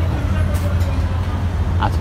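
Steady low rumble of nearby road traffic, the drone of vehicle engines running.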